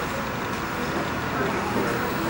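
Steady low rumbling background noise with faint voices mixed in.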